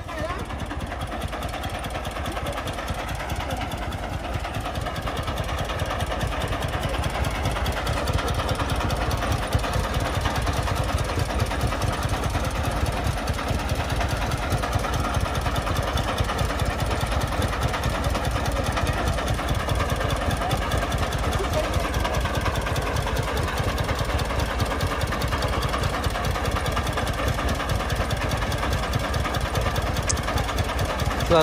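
Diesel engine of a công nông, a Vietnamese homemade farm truck, running steadily with a fast, even knocking beat while the loaded truck sits bogged in soft ground.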